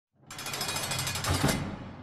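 Intro sound effect: a harsh, very rapid rattling burst that starts a moment in, is loudest about one and a half seconds in, then fades out.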